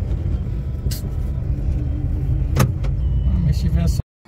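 Steady low rumble of a car heard from inside its cabin, with two brief clicks.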